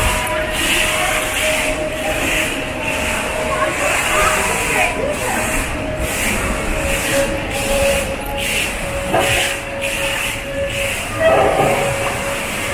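Shopping-mall ambience: the murmur of shoppers' voices and background music, with the splashing of an indoor fountain's water jets at first.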